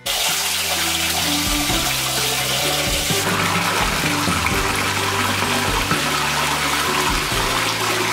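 Bathtub filling from a running tap: a steady rush of water pouring into the tub, with background music playing underneath.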